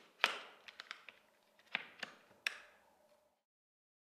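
Plastic golf trolley wheel being fitted back onto its axle, knocking and clicking against the axle and frame as it is pushed home. There is a string of sharp clicks, the loudest about a quarter second in, and the sound stops abruptly a little past three seconds.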